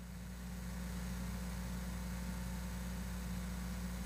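Steady low electrical hum with faint hiss, swelling slightly in the first second and then holding level.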